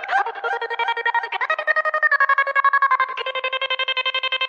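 Electronic DJ-remix music: a synth-like lead plays a melody in fast, stuttering repeated notes, stepping to a new pitch several times, with no drum beat under it.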